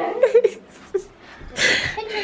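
Children's laughter and voices during rough play around the house, with a short loud burst of noise near the end.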